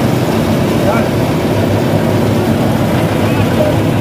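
Mini dal mill running with a steady, loud machine drone from its belt-driven motor and milling drum as it splits pulses.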